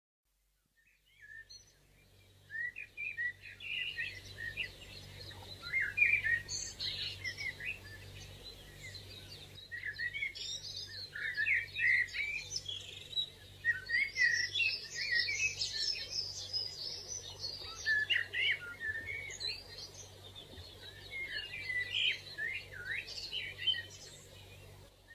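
Many small birds chirping and twittering in quick, overlapping calls, starting about a second and a half in, over a faint low hum.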